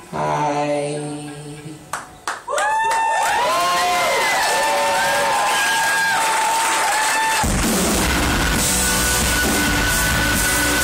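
Live rock band: a male singer's held note fades out, a few sharp hits follow, then high instrument notes bend up and down. About seven and a half seconds in, the full band comes in loud with drums and heavy low end.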